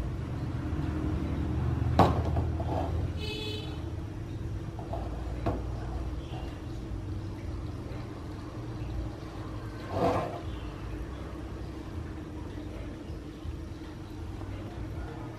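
Gas stove burner running steadily on a high flame under a wok of melting, caramelising sugar. Three sharp metal knocks come as the wok is shaken by its handles against the burner grate, and a brief high tone sounds about three seconds in.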